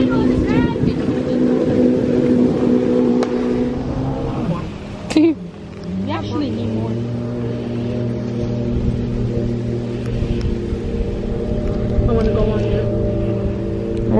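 Jet ski engine running out on the water, a steady drone. About five seconds in its pitch slides down, then holds steady at a lower note.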